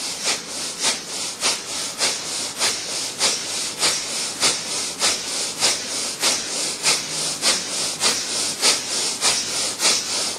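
Kapalbhati pranayama breathing: rapid, forceful exhalations pushed out through the nose in a steady rhythm of about two to three sharp puffs a second, each a short hissing rush of air.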